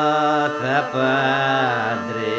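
Thracian folk song: a voice singing a held, ornamented melody over the steady drone of a gaida, the Thracian bagpipe. The vocal line breaks briefly about half a second in, then resumes.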